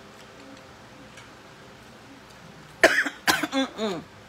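A person coughing: quiet room tone, then a burst of about four coughs near the end.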